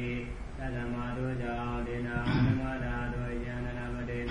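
A Buddhist monk's male voice chanting scripture in slow, long-held notes that step between a few pitches, the traditional Burmese sar-wa recitation style. About two and a half seconds in there is a short, louder, rougher sound.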